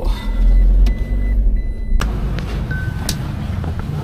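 Car engine and road rumble heard from inside the cabin as the car drives off. About halfway through it cuts suddenly to a lighter outdoor background with a short beep.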